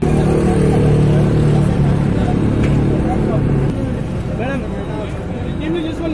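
Engine of a Volvo coach bus running close by, a steady hum that eases off about four seconds in, with people talking around it.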